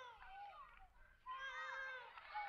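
Faint, high-pitched cries: one gliding call at the start and a second, steadier drawn-out call from a little past halfway.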